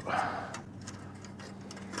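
Light handling noise from a metal vent cap and screwdriver: a short scraping rustle at the start, then faint scattered ticks as the clamp screws are about to be tightened.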